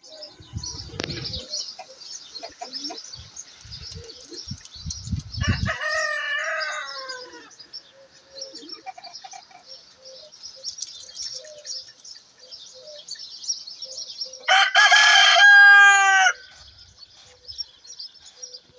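Rooster crowing: one loud cock-a-doodle-doo of about two seconds near the end, with a shorter, fainter call about six seconds in. Small birds chirp steadily underneath.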